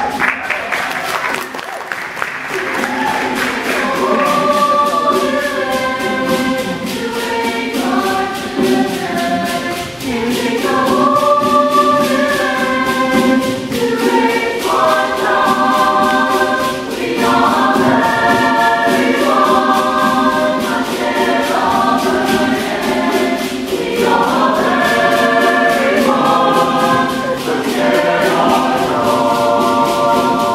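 Mixed chamber choir singing in harmony, the upper parts moving over a steady low held note. The singing starts softer and fills out to full voice within the first few seconds.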